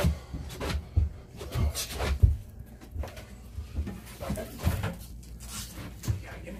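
Irregular knocks and thumps from a heavy aquarium stand being carried and shifted through a narrow stairwell, with heavy steps on the stairs.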